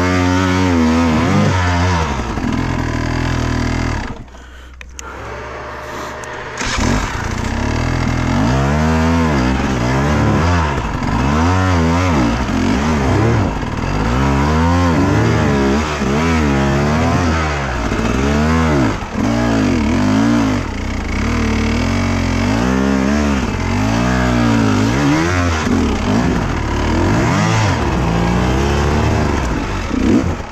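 Enduro dirt bike engine revved up and down again and again under blips of the throttle while climbing a rocky trail. About four seconds in it drops quieter for roughly two seconds, then the revving picks up again.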